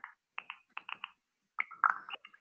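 Light, irregular clicking of computer keys, about ten clicks in two seconds.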